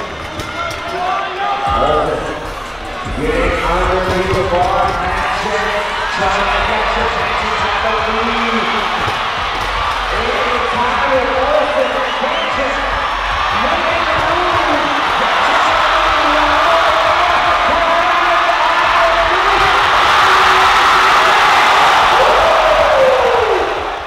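Arena crowd cheering, growing louder through the second half, with the heavy thuds of barbells loaded with bumper plates being dropped on the competition floor after cleans.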